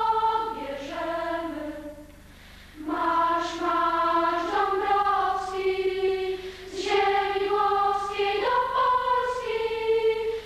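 Choir singing a slow melody of long held notes, with a short pause about two seconds in.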